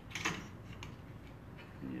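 A few light clicks and knocks in the first second as a squeegee is fitted into the metal clamp on a screen-printing press's print head, followed by quieter handling.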